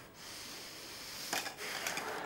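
Glass clinking on a laid dinner table, two short sharp clinks about half a second apart in the second half, over a steady hiss of room noise.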